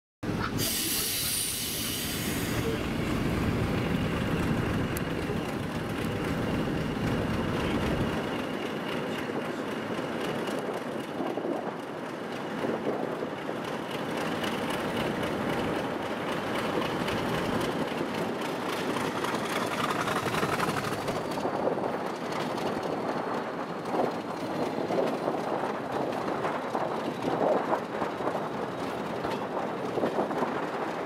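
A diesel-hauled heritage train running, heard from an open coach window: a steady rumble of wheels on rail, with a loud hiss in the first two seconds and a faint high wheel squeal about two-thirds of the way in.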